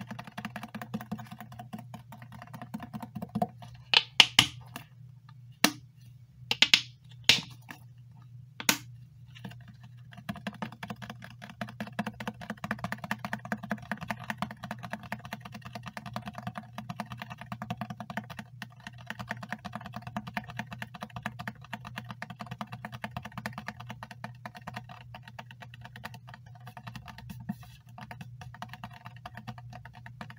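Fingernails tapping rapidly on a plastic bottle, a fast continuous patter of small clicks. A few louder, sharper clicks stand out between about four and nine seconds in.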